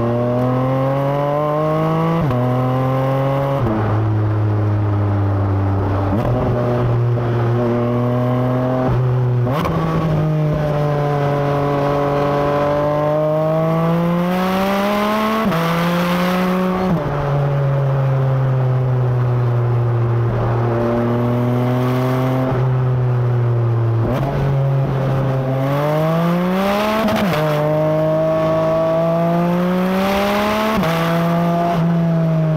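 Porsche 718 Cayman GT4 RS's naturally aspirated 4.0-litre flat-six pulling hard. The engine climbs in pitch and drops sharply at each PDK gearshift, about eight times, with a few stretches held steady or easing off between bursts.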